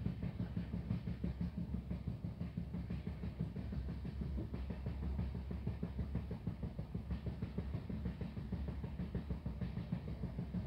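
Passenger train running, heard from inside the coach: a steady low rumble under a rapid, uneven clatter of wheels and rattling bodywork.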